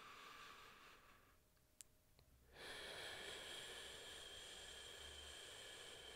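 A person's slow, deliberately audible meditation exhale: a soft, even hiss of breath lasting about four and a half seconds, starting a little under halfway in, after a brief faint breath at the start.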